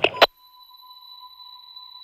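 Two sharp knocks at the very start, the second very loud, then everything cuts out to a steady, high-pitched electronic ringing tone that holds unchanged.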